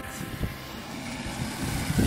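Steady outdoor background noise: a low rumble with an even hiss above it.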